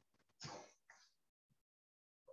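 A man briefly clears his throat about half a second in, followed by a fainter short sound; otherwise near silence.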